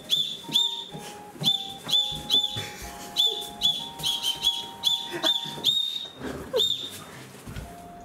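A candy whistle (whistle-shaped ramune candy) blown in a quick series of short, high peeps, about a dozen of them, with one longer peep a little past halfway.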